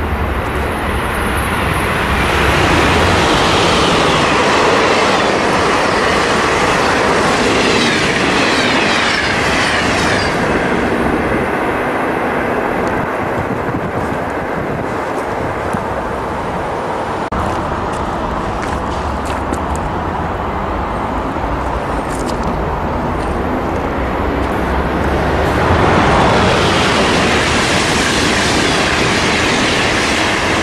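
Amtrak Acela Express electric trainset passing at speed: a loud rush of wheels on rail, with a whine that falls in pitch as it goes by, dying down after about ten seconds. Near the end, the rush of a second train builds as it approaches.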